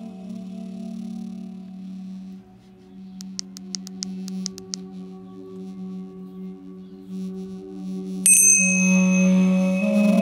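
Duduk music plays throughout with a steady held drone. Just past eight seconds in, a pair of tingsha cymbals is struck together once and rings on with bright high tones. Earlier, about three seconds in, comes a short run of quick high chirps.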